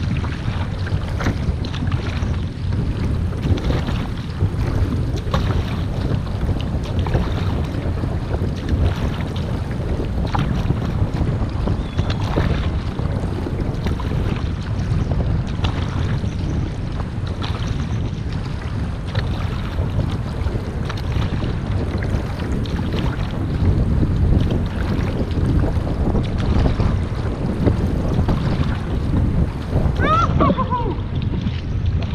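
Wind buffeting a bow-mounted camera's microphone, mixed with the repeated splash of a double-bladed paddle entering and leaving the water and water rushing along a surfski's hull under steady forward strokes.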